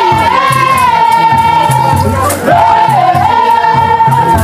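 Gumuz traditional dance song: voices singing together in a high, held melody over a steady, repeating drum beat, with a rattling shaker keeping time.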